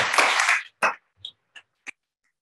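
Applause dying away in the first second, then a few single sharp claps or knocks, about three in a second.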